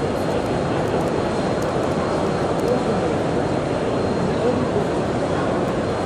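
Steady noise of a huge crowd of pilgrims, countless voices blending into one continuous sound with no single voice standing out.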